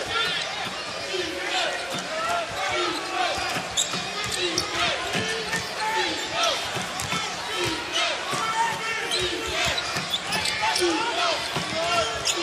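Live sound of a basketball game on a hardwood court: a ball being dribbled, with many short, high chirps of sneakers squeaking on the floor over steady crowd noise.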